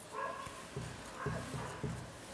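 A marker squeaking and scraping on a whiteboard in short writing strokes, with a few brief, low murmurs from a man's voice in between.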